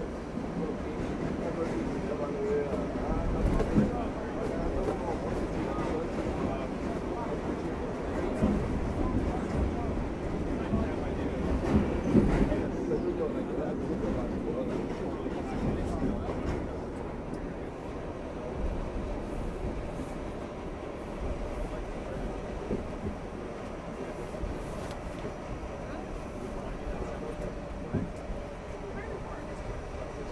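Running noise heard inside an R68A subway car moving through the tunnel: a steady low rumble of wheels on rail with a few sharp knocks, growing somewhat quieter in the second half.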